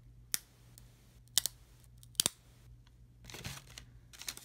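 A stack of 1990 Topps football cards, cardboard with a stick of bubble gum on top, handled between the fingers: three short sharp clicks about a second apart, then a soft rustle near the end.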